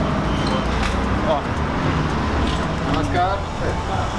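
Steady city street traffic noise, a constant low rumble of passing engines, with brief snatches of voices.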